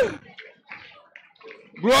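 A man's voice through a microphone and PA: the end of one loud phrase, then a pause filled only with faint background voices, then the start of the next phrase near the end.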